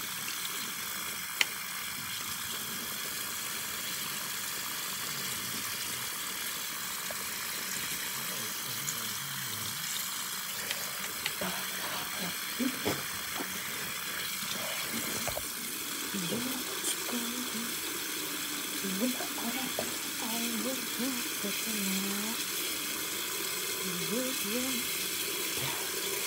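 Bathroom sink tap running steadily, a constant hiss of water. A voice sings quietly over it in the second half.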